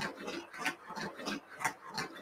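Regular clicking, about three sharp clicks a second, from a home-made magnetic ring-track toy (SMOT) running.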